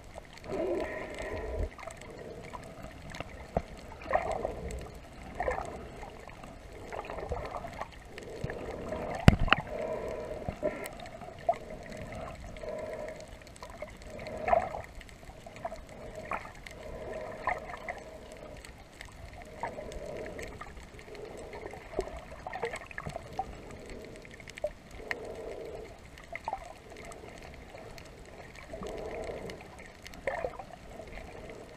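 Muffled underwater water sounds around a camera held by a snorkeler: gurgling and sloshing that swell every second or two, with scattered clicks and one louder knock about a third of the way in.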